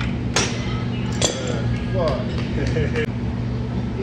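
Two sharp metal clinks of gym weights, the first just after the start and the second about a second later, over a steady low hum.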